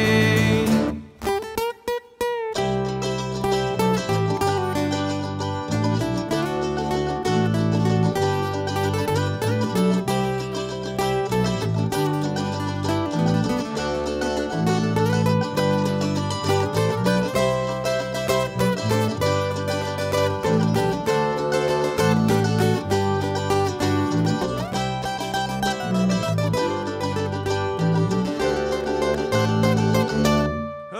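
Instrumental break in a bluegrass-style song played on acoustic guitar, mandolin and upright bass. The band stops briefly about a second in, then comes back in with a walking bass line under picked melody.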